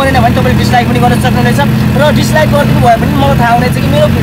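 A vehicle's engine running steadily, heard from inside the cabin, under a man talking in a language the recogniser did not catch.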